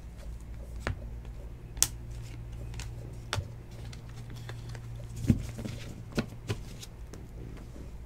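Trading cards being sorted by hand and the stack set down on a table mat: light card handling with a few sharp clicks spread through, over a steady low hum.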